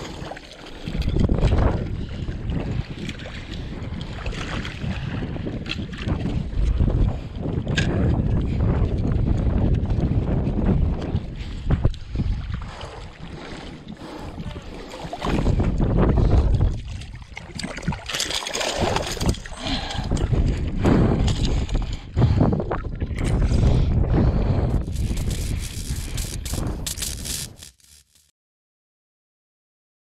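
Wind buffeting the microphone over water lapping and sloshing on a shallow reef, with splashing from a hooked fish thrashing at the surface. The sound stops abruptly near the end.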